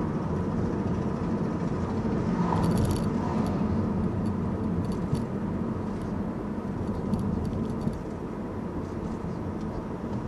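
Steady road and engine noise of a car driving, heard from inside the cabin, with scattered light clicks between about three and eight seconds in.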